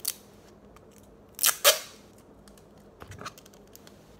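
A roll of clear sticky tape being pulled and torn: a short rip at the start, then two loud rasping pulls about a second and a half in, followed by a few light clicks.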